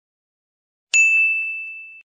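A single bright 'ding' chime sound effect about a second in, one clear high tone ringing on and fading away: the notification chime that goes with a follow-and-like end-card prompt.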